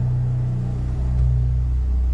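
Low sustained bass notes from a live band's accompaniment, with the lowest note changing about a second in and no singing above them.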